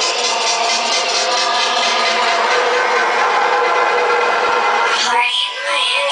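Loud electronic dance music from a DJ's club set, recorded as a dense wash with almost no bass. About five seconds in it thins into a break with swooping sweeps.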